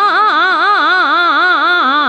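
A Hindustani classical voice singing a fast taan in Raag Bhairav, tuned to C#. The notes run quickly up and down, about five runs a second, in one unbroken line over a faint steady drone.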